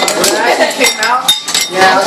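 Eating utensils clinking and tapping against ceramic soup bowls, in a run of short sharp clicks, with voices talking over them.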